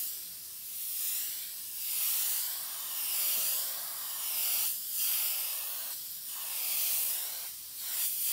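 Siphon-feed airbrush spraying paint: a continuous high hiss of air and atomised paint that swells and eases in waves every second or two as the brush sweeps around.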